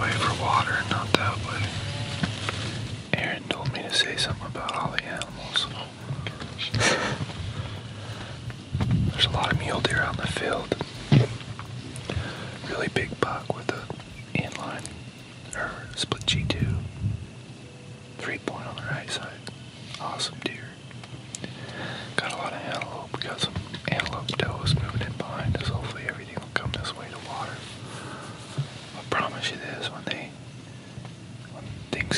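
Hushed whispering, with small rustles and clicks in between.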